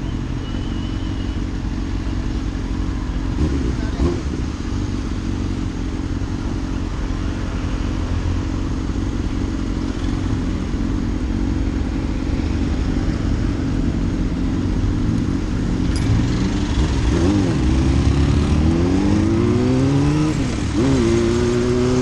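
Honda Hornet's inline-four motorcycle engine running at low, steady revs. About three-quarters of the way through it revs up in two rising climbs as the bike accelerates and shifts up a gear.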